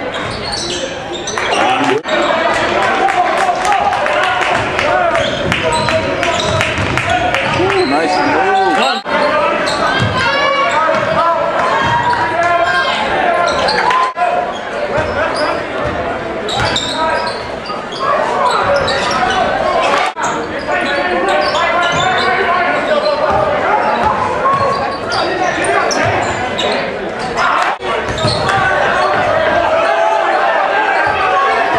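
Live basketball game sound echoing in a gymnasium: a ball dribbling on the hardwood floor under the voices of players and spectators. There are a few brief drop-outs where separate clips are joined.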